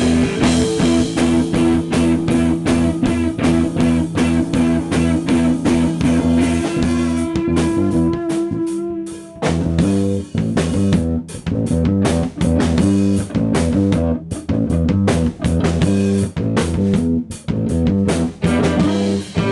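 Live rock band playing: electric guitars and bass guitar over a steady drum beat. Near the middle the band drops out briefly to a few held notes, then comes back in together.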